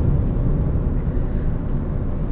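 Steady road noise of a car driving at speed: an even low rumble of tyres and wind.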